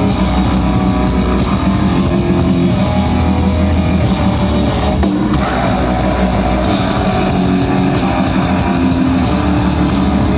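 Metal band playing live through a festival PA: loud, dense distorted electric guitar, bass and drums, with a brief bright crash about five seconds in.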